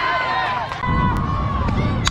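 Several people shouting and calling out at once during a softball play, with a low rumble setting in about a second in.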